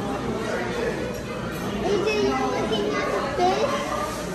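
Indistinct chatter of several voices in a busy dining room, children's voices among them.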